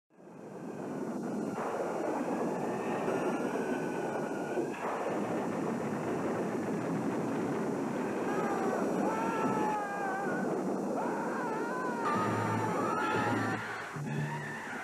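Old black-and-white film soundtrack: a continuous rushing roar with high, wavering tones gliding up and down over it, which grow plainer about eight seconds in.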